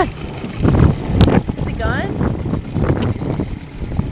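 Mercury outboard motor running with wind buffeting the microphone, a loud uneven rumble, with brief vocal sounds about two seconds in.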